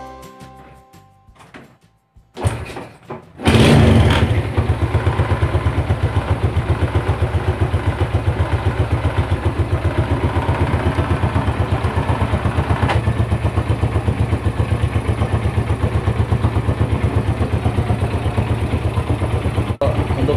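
A Yamaha Jupiter Z's single-cylinder four-stroke engine is started about three seconds in and then idles steadily with an even pulse. The idle is smooth apart from a 'kredek-kredek' rattle, which the owner suspects comes from the cam chain tensioner, a crankshaft bearing or the clutch shoes.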